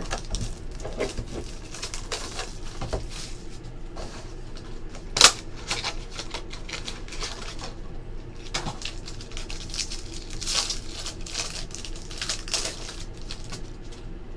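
Hands unwrapping a foil-wrapped Topps Triple Threads trading card pack and its cardboard box: irregular crinkling, tearing and rustling, with one sharp click about five seconds in.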